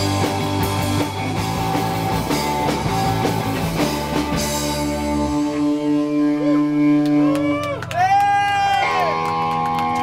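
Live rock band (electric bass, electric guitar and drums) playing the close of a song through amplifiers. About halfway through, the drums and bass stop, leaving held guitar notes ringing, with wavering, bending tones near the end.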